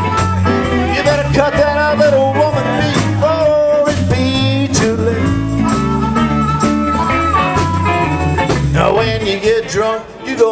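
Live blues band playing an instrumental passage between sung lines: electric guitars over a steady electric bass and drum groove, with a wavering lead line on top.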